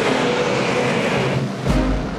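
Several dirt modified race cars' V8 engines running hard around a dirt oval: a loud, steady blend of engine noise from the field.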